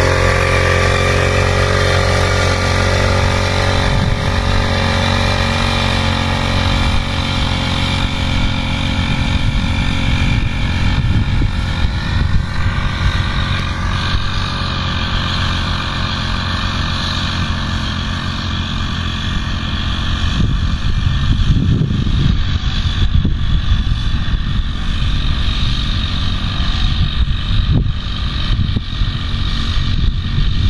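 Small petrol engine of a backpack power sprayer running steadily while spraying, its note growing fainter as the sprayer is carried away.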